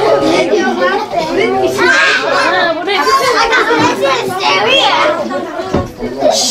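Several people talking over one another, with high children's voices among the adults.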